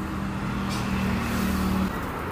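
A motor vehicle engine runs close by with a steady low hum that cuts off near the end, over roadside traffic noise.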